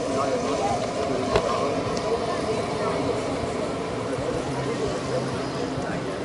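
Indistinct chatter of spectators over a steady outdoor background, with a single sharp click about a second and a half in.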